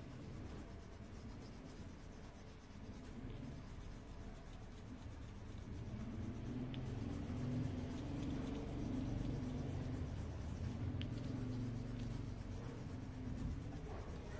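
Coloured pencil scratching on paper in quick back-and-forth strokes as a drawing is shaded in, louder in the second half.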